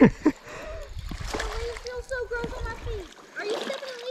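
A hooked bass splashing at the surface of a shallow creek as it is reeled in on a baitcasting rod. A voice slides down in pitch at the very start, and a long wavering vocal tone runs over the splashing.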